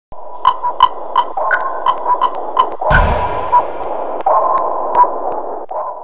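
Metronome ticking about three times a second over a steady clatter of a bullet-time array of Canon SL1 DSLR shutters firing one after another. About three seconds in comes a loud burst with a deep thump, as the remaining cameras fire all at once to freeze the action.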